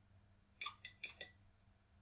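Input switch on a PLC trainer being operated by hand: a quick cluster of faint, sharp clicks from about half a second to a second and a quarter in. This pulses the count-down counter's input, decrementing its value to zero.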